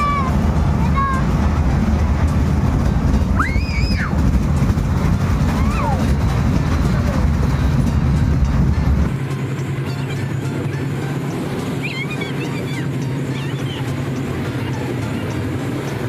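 Fairground kiddie train ride running: a steady low rumble that drops away about nine seconds in. Music and a few shouts and voices from riders and the fair sound over it.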